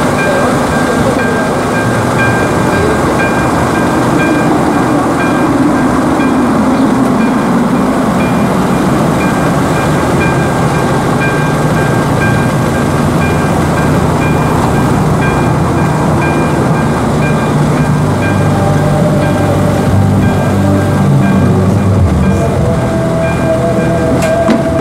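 AŽD ZV-02 electronic level-crossing bell ringing steadily while the crossing is closed, over loud rumbling noise, with a low droning hum growing in the second half.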